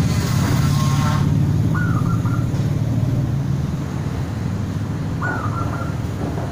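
Zebra dove (perkutut) cooing: two short, stepped coo phrases, one about two seconds in and one near the end. A steady low hum runs underneath.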